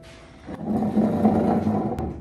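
A classroom chair dragged across the floor: a rough scraping noise starting about half a second in and lasting about a second and a half.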